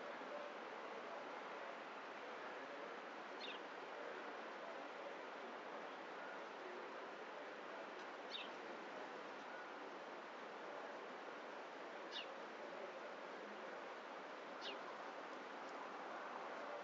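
A stream running with a steady rush of water, with four short, high bird chirps spread through it.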